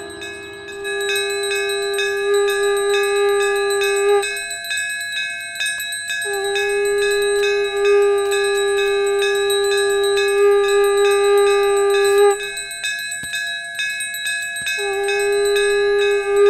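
A conch shell (shankh) blown in three long held blasts, each bending in pitch as it ends and the last starting near the end, over a hand bell rung rapidly and steadily: the conch and bell of a Hindu aarti.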